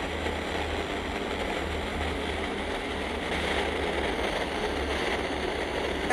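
FM radio static from a TEF6686 portable receiver's speaker: a steady hiss with a low, uneven hum underneath while the receiver is tuned to weak, near-empty frequencies around 87.7–88.1 MHz, where the signal is too weak for a clear station.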